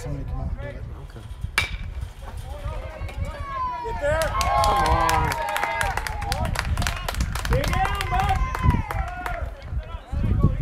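A single sharp crack about one and a half seconds in, like an aluminium bat hitting a baseball. From about four seconds on, several voices overlap, shouting and calling out on the field and in the stands.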